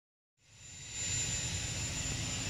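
Steady outdoor background noise that fades in over the first second: a low rumble with a thin, steady high-pitched whine above it.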